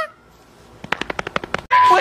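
A quiet moment, then a rapid burst of about a dozen sharp clicks in under a second, followed by a short steady beep near the end.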